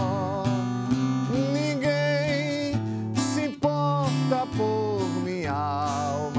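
A man singing a Portuguese evangelical hymn with a marked vibrato, accompanying himself on a strummed acoustic guitar.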